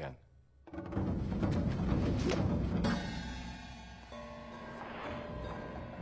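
Orchestral film score with timpani and drums that swells in suddenly about a second in, then settles into held sustained tones.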